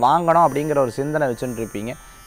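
A man speaking Tamil, with a steady electrical hum underneath; his voice trails off near the end.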